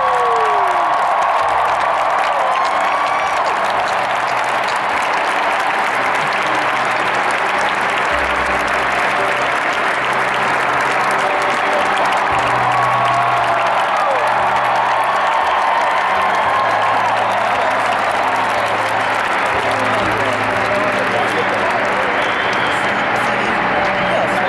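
Large crowd applauding steadily and at length.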